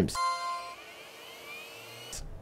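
Chime-like sound effect: several bright tones sound together and ring for about half a second before fading, followed by a faint, slowly rising tone.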